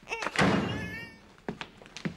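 A single heavy thud about half a second in, with a short ringing tail, followed by a couple of light knocks.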